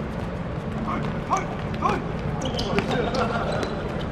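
Short shouted calls from players and onlookers over a steady background din, with light thuds of a football being dribbled and kicked on a hard court surface.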